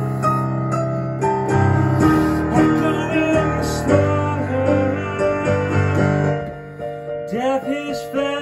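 Digital piano playing an instrumental passage: held low bass notes under chords and a melody line. A voice comes in near the end.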